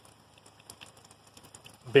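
Faint, scattered drips of roof meltwater falling into a plastic mixing tub holding shallow water, each one a small tick.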